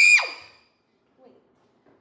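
A boy's high-pitched scream, held on one pitch and then sliding sharply down before cutting off about half a second in.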